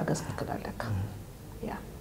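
Speech only: a woman talking quietly, in short phrases with brief pauses.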